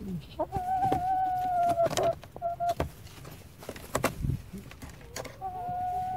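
A chicken gives a long, drawn-out call held at one steady pitch, then starts another near the end. A few sharp clicks and taps fall in between.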